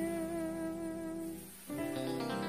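Live dangdut koplo band music: one long, steady held note over the band, which breaks off about one and a half seconds in before the band comes back in fuller.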